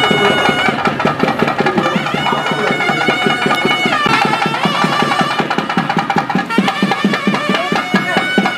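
Traditional Indian ceremonial music: a reed wind instrument holding long notes that bend in pitch, over quick, steady drumming.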